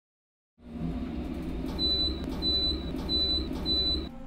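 Elevator sound effect: a steady low rumble of the car travelling, starting about half a second in, with four short high beeps about 0.6 s apart from a little before halfway, like floors being counted off.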